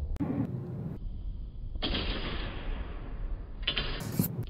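Practice longswords clashing and scraping against each other in a bind, in three bursts: a short one just after the start, a longer scrape in the middle, and another clash at the end.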